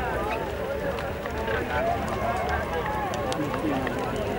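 Many men's voices talking and calling over one another, with hoofbeats of horses running in a single-foot gait on sand and scattered short clicks.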